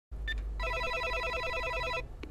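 Apartment door intercom panel: a short beep as a key is pressed, then the call tone sounding as the panel rings the dialled flat, a rapid pulsing electronic trill that starts about half a second in.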